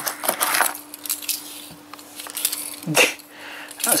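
A plastic torch is pulled out of its strap in a zip-up tool case and handled, giving a few light clicks and knocks, most of them in the first second and another near the end. A faint steady hum sits under it.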